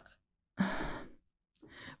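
A woman's audible sigh into a close microphone, about half a second long and fading out. A fainter short breath follows near the end, just before she speaks again.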